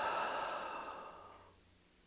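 A woman's slow exhale, a long breathy out-breath that fades away about one and a half seconds in.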